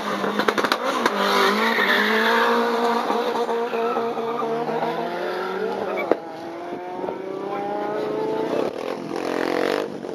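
Drag-race car launching from the start line and accelerating down the strip, its engine note climbing through the gears. There are shifts about six seconds in and again near the nine-second mark, and the sound grows fainter after the first of them as the car pulls away.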